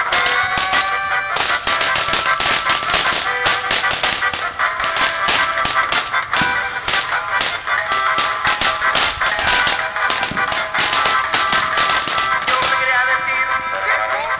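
A song plays throughout. Over it comes dense, irregular crackling from a ground fountain firework, which stops about a second and a half before the end.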